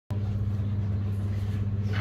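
Steady low electrical hum with a faint hiss from a sound system, several fixed low tones held evenly.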